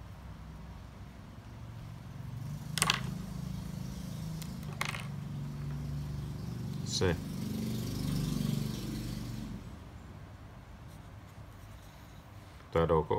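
A low rumble like a passing motor vehicle swells over several seconds and fades away. Over it come three sharp clicks and a soft scratching of a felt-tip marker being handled and written with on paper.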